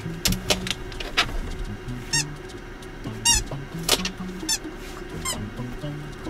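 Squeaky dog toy squeezed in four short squeaks, with a few sharp clicks in the first second.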